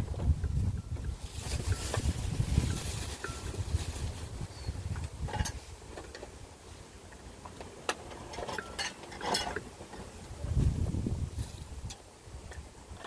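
A dog lapping water from a bowl, heard as scattered short wet clicks and splashes. Gusts of wind rumble on the microphone during the first few seconds and again near the end.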